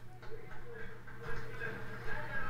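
Faint, muffled voices over a steady low hum, with no distinct event.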